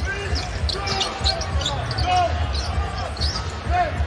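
Sound of a live basketball game on a hardwood court: the ball dribbling and sneakers squeaking in short chirps, over a steady low arena rumble.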